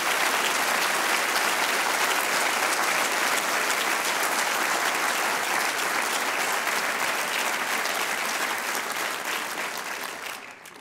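A large hall audience applauding, a steady dense clapping that eases off slightly near the end.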